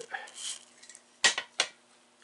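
A short spray hiss from an aerosol can, then two sharp metallic clinks a third of a second apart as small metal parts of a radio-control car engine knock together during reassembly.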